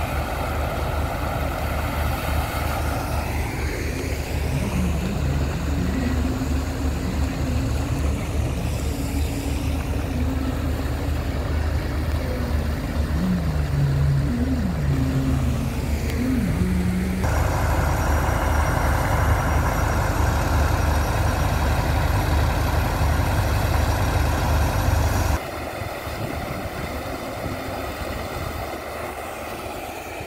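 Sand-pump engine running steadily with a low throb, over the rush of sand-and-water slurry pouring from the discharge pipe. The sound shifts abruptly about two-thirds of the way through and drops quieter near the end.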